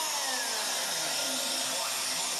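Weak FM radio station heard through heavy static hiss from a tuner, with a few tones from the broadcast falling in pitch under the noise. The signal is too weak for its RDS data to decode.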